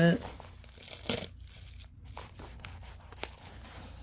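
Plastic-wrapped aluminium foil plate crinkling as it is shaken, in a few irregular rustles, the loudest about a second in.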